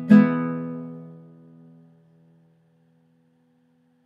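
Closing chord strummed on a nylon-string classical guitar, ringing out and fading away over about two seconds until only a few low notes linger faintly.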